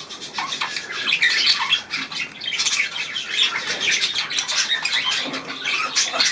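Small aviary birds chattering and chirping, many quick overlapping calls at once.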